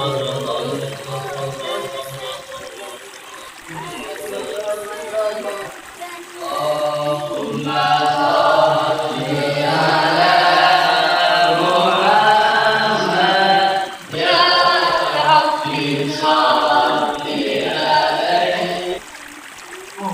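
A group of male voices chanting a religious recitation together, softer for the first few seconds and fuller and louder from about seven seconds in.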